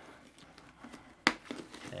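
A press-stud snap on the Scorpion EXO-AT960 helmet's one-piece cheek pad and neck roll liner pulled open: one sharp click a little over a second in, followed by a fainter click.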